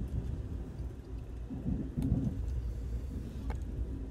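Steady low rumble of a moving passenger train, heard from inside the carriage, with a couple of faint clicks.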